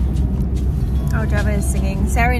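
Steady low road and engine rumble of a moving car, heard from inside the cabin; a woman's voice comes in about a second in.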